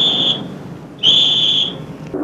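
Two short, steady, high-pitched whistle blasts, each under a second long, about a second apart.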